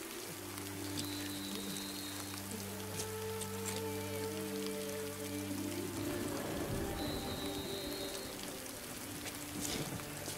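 Steady rain falling, under a film score of long, held low notes that change about six seconds in.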